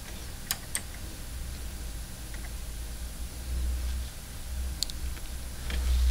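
A few sharp clicks from the front-panel buttons of a Nakamichi ZX-9 cassette deck being pressed, two close together about half a second in and more near the end, over a low rumble.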